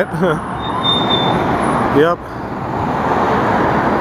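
Road traffic on a multi-lane street: passing vehicles' tyre and engine noise swelling up, dropping away just after two seconds, and building again.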